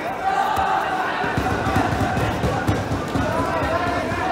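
Repeated low thuds of grapplers' bodies and feet hitting the competition mats as a standing exchange goes to the ground, starting about a second in, over indistinct voices in the hall.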